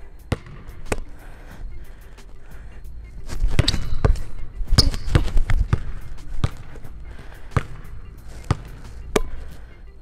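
Basketball dribbled hard on a hardwood gym floor at full speed: a run of sharp bounces, about one or two a second, through an in-and-out, pull-back and crossover combo.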